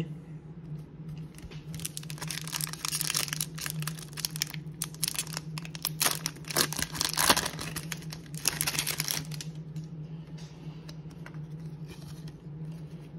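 A 1993 Leaf Series 1 baseball card pack's foil wrapper being torn open and crinkled by hand: a dense run of crackling from about two seconds in to about nine seconds, loudest around the middle. A steady low hum runs underneath.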